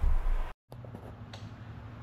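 A brief low rumble, then a sudden cut to quiet room tone with a low steady hum.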